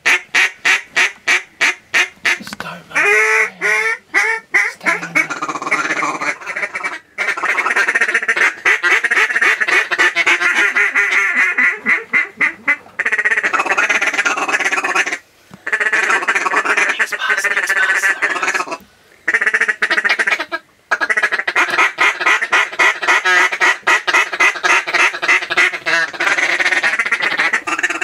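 Hand-held duck calls blown hard: a fast run of quacks, then long stretches of rapid quacking chatter broken by a few short pauses.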